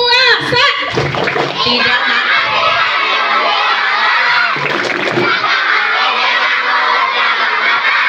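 A large crowd of schoolchildren shouting and chanting all at once, many voices together without a break.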